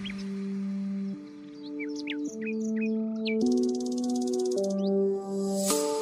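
Background music: slow, held chords that change about once a second, with bird chirps and a brief rapid trill over them in the first half.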